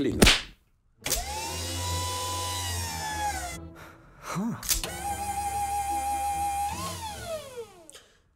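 Electric motor of a reclining chair whirring with a steady whine over a low hum as the chair lowers, the pitch sliding down as it stops; a couple of seconds later it whirs again as the chair rises, its pitch briefly climbing and then falling away.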